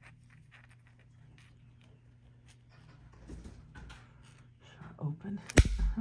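Magnetic fidget slider handled with a run of faint light clicks. Near the end its two halves snap together with one loud, sharp click.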